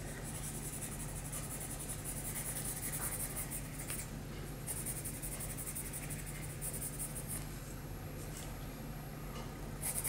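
Graphite pencil shading on drawing paper: repeated short scratching strokes as shadow is laid in, with a low steady hum underneath.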